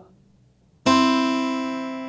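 Steel-string acoustic guitar: about a second in, several strings are finger-plucked in one clean attack and ring on, fading steadily. The middle and ring fingers strike together so that their notes sound at the same moment rather than spreading apart.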